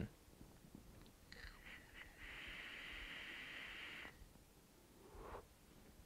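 Faint, steady airy hiss of a draw through an Aspire Atlantis sub-ohm tank with its airflow wide open, lasting about two seconds. A soft exhale follows near the end.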